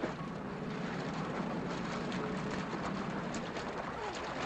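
Steady, even background noise with no distinct events: the hiss and low hum of an old film soundtrack's room ambience.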